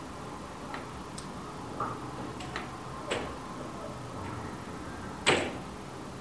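Outdoor cricket-ground ambience with scattered light clicks and knocks, and one sharper, louder knock about five seconds in.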